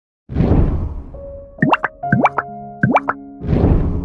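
Intro sound effects: a whoosh, then three quick rising plops over held musical notes, then a second whoosh near the end.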